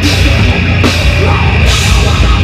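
A metalcore band playing live and loud: pounding drum kit, distorted electric guitars and bass. A cymbal crash opens the stretch and another comes about a second and a half later.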